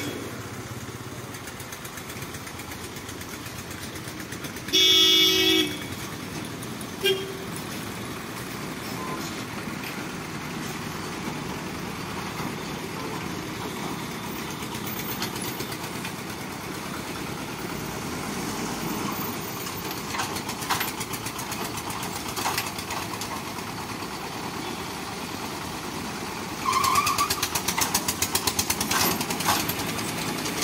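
Road traffic crossing a level crossing: engines running steadily, with a loud vehicle horn honking for about a second around five seconds in and a short toot two seconds later. Near the end a small engine runs close by with a rapid, even beat.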